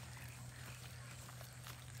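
Quiet outdoor background with faint rustling as a person walks over dry grass, over a steady low hum.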